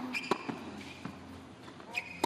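Tennis rally on a hard court: a few sharp pops of racket strings hitting the ball and the ball bouncing, roughly one every second, with short high squeaks beside two of them.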